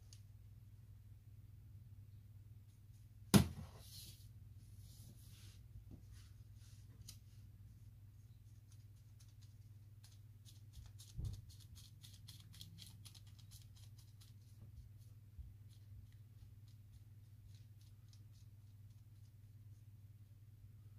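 Faint crackling ticks of gloved fingertips tapping dried rose and cornflower petals down onto the top of a soap loaf, over a steady low hum. A sharp knock about three seconds in and a duller thump about eleven seconds in.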